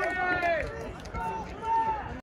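A few voices shouting and cheering after a hit, long drawn-out calls that fall in pitch, then two shorter calls near the end.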